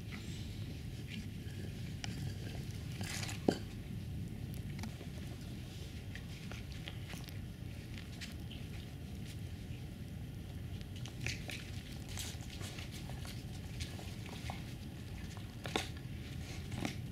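Tibetan mastiff puppies scuffling in snow: scattered soft crunches and clicks of paws and teeth over a steady low rumble, with one sharp snap about three and a half seconds in.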